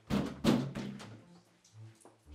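A sudden heavy thump about half a second in, the loudest sound here, fading away over about a second.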